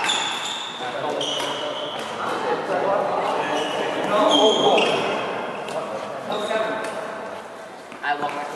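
Badminton rally: shuttlecock struck by rackets with sharp hits, and court shoes squeaking in short high squeaks on the court mat, in an echoing hall, with voices in the background.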